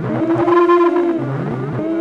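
Sample played through a Verbos 288v time-domain processor, a delay module: layered pitched tones that bend up and fall back in arches, about twice, with overlapping delayed copies.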